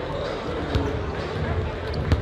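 Basketballs bouncing on a hardwood gym court, with sharp bounces about a second in and near the end, over steady hall noise and voices.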